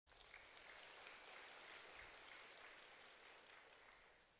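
Near silence: faint room tone with a soft hiss.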